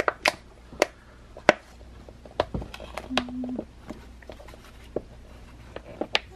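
Hands handling plastic shipping packaging and tissue paper: an irregular string of sharp clicks, taps and crinkles, the loudest about a second and a half in.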